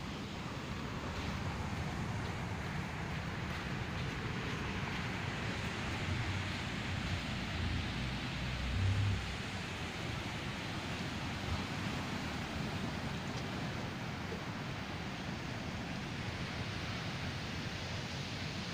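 Ocean surf breaking and washing up a sandy beach, a steady even rush of noise, with low wind rumble on the phone's microphone that swells around eight to nine seconds in.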